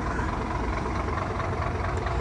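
Heavy truck diesel engine idling, a steady low rumble.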